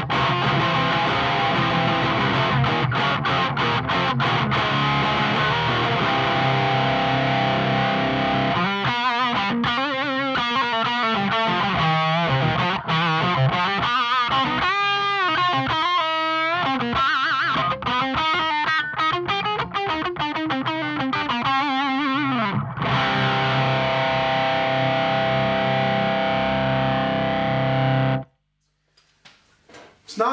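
Distorted electric guitar through the Victory Silverback amplifier's overdrive channel, boost off and gain at about eleven o'clock: driven chords, then single-note lines with wide, wavering vibrato and bends, then a held, ringing chord. The sound cuts off suddenly near the end.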